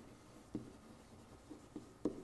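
Faint tapping and rubbing of a stylus on an interactive whiteboard as a word is handwritten, with a few light taps.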